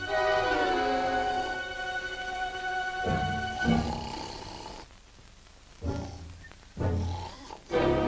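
Orchestral cartoon film score with sustained chords. In the second half it thins out and is broken by three short, loud low-pitched blasts.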